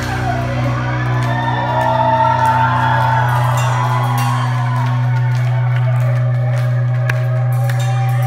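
A rock band playing live: a low note held ringing steadily on the amplified guitar and bass, with a voice rising and falling over it and the drums mostly quiet.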